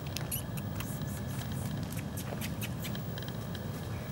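Footsteps of a person and a Scottish Deerhound puppy on gravel and grass: scattered light, sharp crunches and clicks over a steady low rumble.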